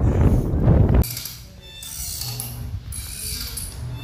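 Wind rushing on the microphone for about the first second, then a sudden cut to a fabric hammock creaking and squeaking on its ropes and fittings as it swings.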